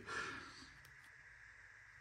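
Near silence: a brief soft noise fades out in the first half second, then quiet room tone.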